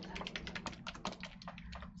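Rapid light clicking, about a dozen small clicks a second, thinning out near the end.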